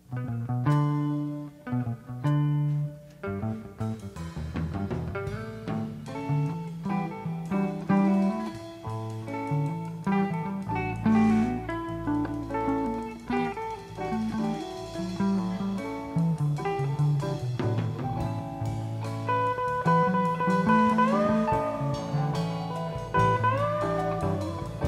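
Live rock band playing, led by electric guitars over bass, starting abruptly. A guitar bends sustained notes up and back down twice near the end.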